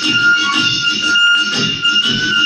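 Instrumental music with long held high notes over a lower accompaniment.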